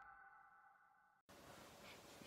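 Near silence: the last faint tail of a musical sound effect fades away and cuts to dead silence about a second in, followed by faint room tone.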